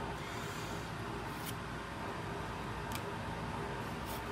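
Trading cards being slid across one another in the hand, giving two faint clicks about a second and a half apart over a steady room hum.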